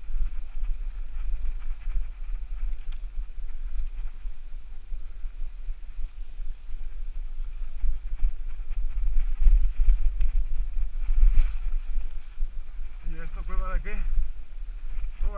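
Mountain bike rolling down a rough dirt trail: a heavy low wind rumble on the bike-mounted microphone, with the rattle and knocks of the bike over roots and stones. A voice calls out near the end.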